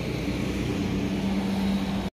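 A motor running with a steady mechanical drone and a low hum. Its tone grows a little stronger in the second half.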